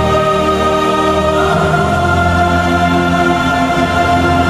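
Choral music with sustained, held chords that move to a new chord about one and a half seconds in.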